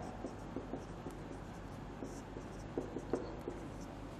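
A marker pen writing on a whiteboard: faint, short scattered strokes and taps as the words are written.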